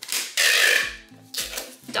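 Packing tape ripping off a handheld tape dispenser as a cardboard box is taped shut: one long rip, then a shorter one about a second and a half in. Background music with a steady beat plays underneath.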